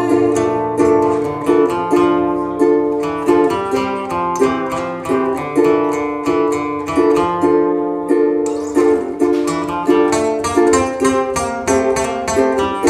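Ukulele and acoustic guitar playing an instrumental passage together, plucked chords in a steady, even rhythm.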